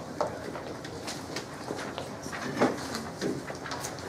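Classroom room noise: scattered light knocks, clicks and rustles with a few brief, faint voices in the background.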